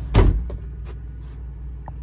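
Steady low rumble of a semi-truck heard in its cab, with one loud thump just after the start and a few faint clicks after it.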